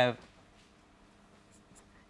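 Faint strokes of a marker pen writing on a whiteboard, after a last spoken word at the very start.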